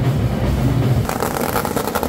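Live festival music, changing about a second in to a dense, rapid crackle of firecrackers going off.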